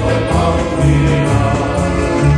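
Finnish pelimanni folk ensemble of fiddles, accordion and double bass playing a song, the bass stepping between two notes about every half second.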